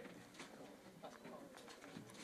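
Near silence: faint room tone with indistinct, murmured voices in the background.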